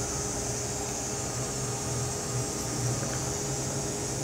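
Steady hiss with a low, even hum from a speaker driven by a switched-on amplifier and PT2399 echo mixer circuit with no input, the microphone not yet switched on. The circuit is known to put out some noise, made worse here by the microphone sitting close to the speaker.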